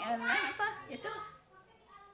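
An elderly woman speaking for about a second, then pausing.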